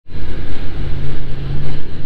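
Tow truck engine running hard under load as it drives through soft beach sand, a loud, steady low drone.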